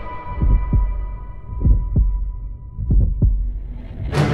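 Slow heartbeat sound effect: three low double thumps, lub-dub, a little over a second apart, while a high held tone left over from the music fades out.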